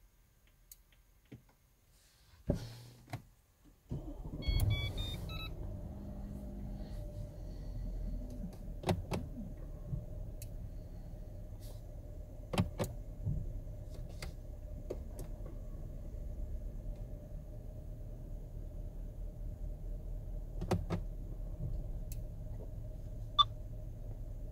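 Mercedes GL500 engine starting about four seconds in, then idling steadily, with a short run of electronic beeps just after it starts. Scattered sharp clicks from the cabin.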